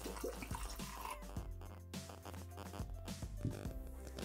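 Water poured from a glass carafe into the stainless steel bowl of a Thermomix (Bimby), faint under quiet background music.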